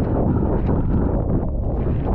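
Loud, steady wind buffeting the microphone, strongest in the low range with small crackles running through it.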